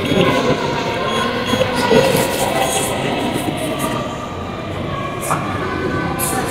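A steady background din in a public hall, with faint voices.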